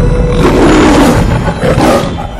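Lion roaring twice, a long roar starting about half a second in and a shorter one near the end, over the logo's music.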